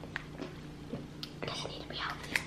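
Soft eating sounds: a plastic spoon clicking lightly in a plastic bowl and quiet chewing, with a brief breathy, whisper-like sound about one and a half seconds in, over a low steady hum.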